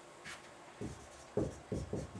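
Dry-erase marker writing on a whiteboard: a few short strokes in the second half.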